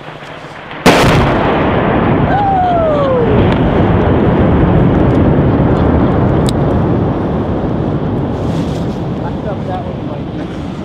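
120 mm mortar round exploding on a distant ridge: a sudden sharp blast about a second in, followed by a long rumble that rolls on and fades slowly. A man's voice gives a short falling exclamation a couple of seconds after the blast.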